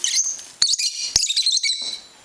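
Young lovebirds chirping in short, high, repeated calls, with two sharp clicks in the first half.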